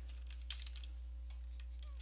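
Computer keyboard being typed on: a quick run of faint keystrokes starting about half a second in, then a few scattered ones, over a steady low hum.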